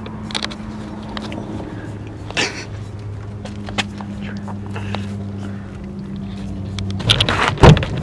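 A car's steady low hum, with a few light clicks and knocks, stops about seven seconds in; a rustle and a single heavy thump follow near the end.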